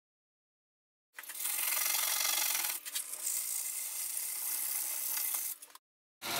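Steel plane iron rubbed on an abrasive, a continuous scraping hiss that starts about a second in and stops shortly before the end, with a faint steady hum beneath it.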